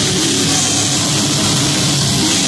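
Black metal band playing live: distorted electric guitars and drum kit, loud and dense without a break.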